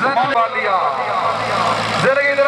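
A man's voice calling out, with a tractor engine running steadily underneath from about half a second in.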